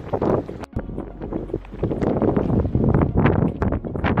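Strong wind buffeting the microphone in uneven gusts, with a brief drop-out just under a second in.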